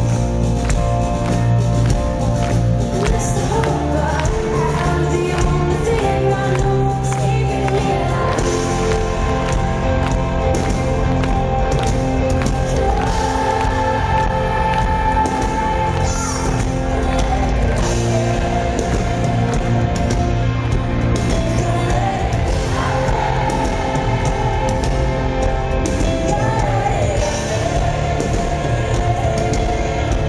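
Rock band playing live with singing, loud and continuous, recorded from among the audience.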